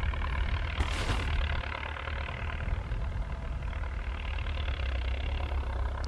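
Belarus 1025 tractor's turbocharged diesel engine running steadily under load as it pulls a field implement, heard from across the field. A brief hiss comes about a second in.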